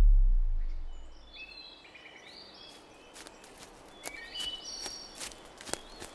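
A low, falling bass tone fades out in the first second. Then a quiet woodland ambience follows: birds calling in short, high whistles, with scattered sharp clicks and snaps from about three seconds in.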